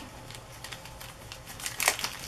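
Clear plastic bag crinkling faintly as fingers handle it, with one sharper crackle near the end.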